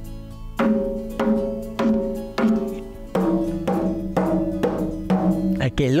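Kompang, a Malay hand frame drum, struck with closed fingers and half the palm to give its low-pitched tone. It is a steady run of strokes, each with a short ringing note, that starts about half a second in and comes faster, about three a second, from about three seconds in.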